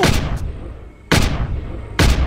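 Dramatized gunshot sound effects: a loud shot at the start, another about a second later and a third right at the end, each dying away in a long echoing tail.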